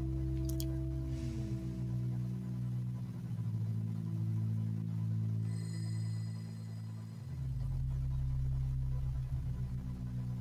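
Background music: a slow ambient synth pad of sustained low notes that glide from one pitch to the next, with a short high ringing tone about five and a half seconds in.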